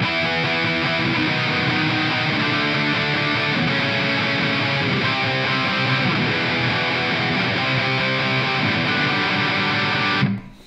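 Distorted electric guitar playing power chords in a chromatic downward pattern, at a steady level, stopping abruptly at the end.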